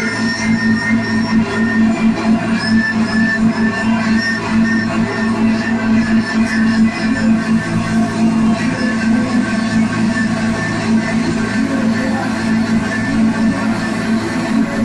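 Live band playing loud, dense electronic rock: a steady low drone under bass guitar and electronics, with a short high note repeating about twice a second through the first half.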